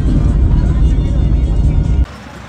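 Loud, steady low rumble of a vehicle driving at highway speed, heard from inside the cabin, with music playing faintly over it.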